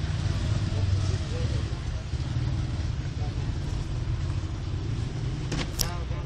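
Outdoor background noise: a steady low rumble, with a brief high rising chirp near the end.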